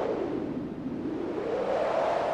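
A whoosh of noise with no clear pitch that sinks and then rises again, like a synthesized filter sweep in a song's intro.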